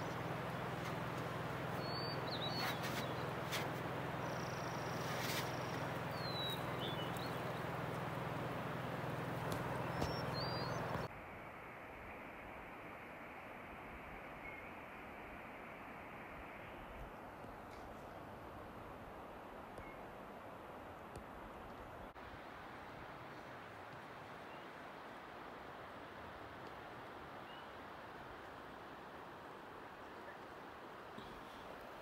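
Outdoor ambience: a steady noise with a low hum under it and a few faint, high bird chirps. About eleven seconds in, it cuts suddenly to a quieter, even hiss.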